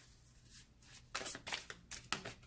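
A tarot deck being shuffled by hand: a run of short card-on-card strokes, sparse at first and heaviest a little over a second in.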